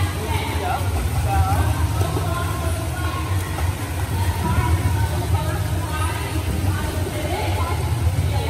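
Indoor swimming-pool ambience: a steady low hum throughout, with distant voices echoing through the hall and the splashing of a child kicking in the water.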